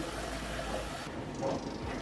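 Kitchen tap running water into a machine's clear water tank, a steady rush: the tank is being rinsed out after descaling.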